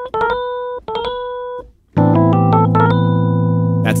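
Keyboard playing a short phrase twice, each time a quick roll of grace notes from below landing on a held B. About two seconds in, a low chord comes in under the melody and is held.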